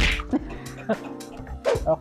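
Wire whisk stirring egg-yolk chiffon batter in a glass mixing bowl, with a few light taps against the glass, under steady background music.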